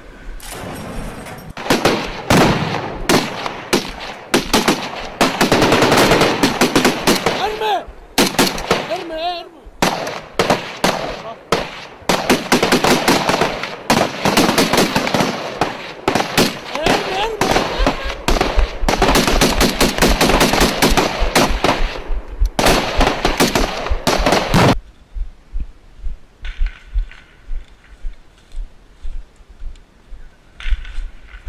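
Close-range automatic rifle fire: bursts of rapid shots, one after another for about 25 seconds, with men's voices shouting among them. The firing cuts off suddenly near the end, leaving only faint scattered sounds.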